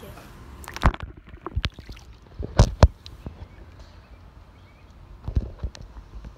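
About half a dozen sharp knocks and thumps close to the microphone, the loudest pair in the middle, as a phone is handled and swung around.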